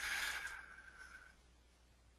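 A faint breath exhaled into the microphone, fading out by about a second in, then near silence.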